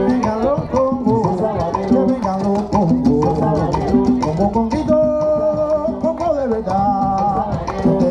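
Live Cuban rumba: conga drums keeping a steady repeating pattern under sung vocals, with a voice holding one long note about five seconds in.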